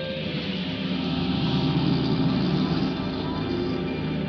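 Film score music over a Chevrolet panel delivery truck's engine pulling away from the curb, swelling about a second in and easing off near the end.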